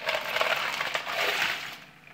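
Ice cubes poured from a plastic bowl into a plastic bucket of brine, a dense clatter of clinking cubes that starts at once and dies away near the end.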